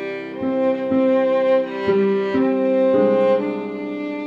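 Solo violin playing a slow worship-song melody in sustained bowed notes, moving to a new note about every half second, over a piano backing track.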